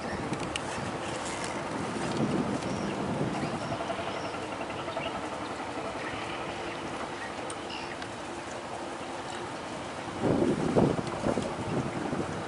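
A boat engine hums steadily under rushing water and wind on the microphone, with a louder rush of wind or water near the end.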